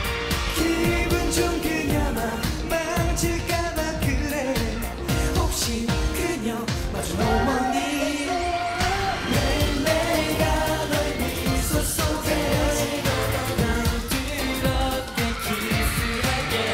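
K-pop dance song performed by a boy band: male voices singing over a steady pop beat.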